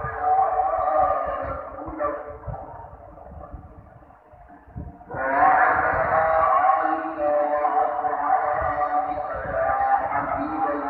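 Dawn (fajr) call to prayer, the adhan, sung by a muezzin in long held melodic phrases. One phrase fades out in the first few seconds, and the next begins about five seconds in and is held.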